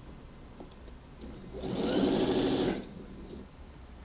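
Electric domestic sewing machine stitching a seam in one short run of about a second and a half, starting a little after a second in and stopping just before three seconds.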